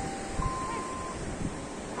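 Wind rumbling on the microphone over open-air background noise, with two faint, thin steady tones overlapping in the first second.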